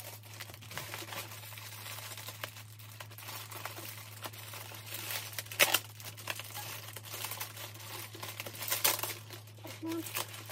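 Plastic bubble wrap crinkling and rustling as it is handled and peeled away from a toy, with louder crackles about five and a half seconds in and again near nine seconds, over a steady low hum.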